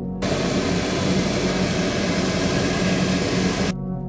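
Coffee roaster's cooling tray running: freshly roasted beans stirred by the rotating arm with the cooling fan blowing, a steady rushing noise that starts just after the beginning and cuts off suddenly near the end. Background music plays underneath.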